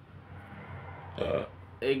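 A man's brief pause in talking, with a faint steady room hum. There is one short vocal sound a little over a second in, and his speech resumes near the end.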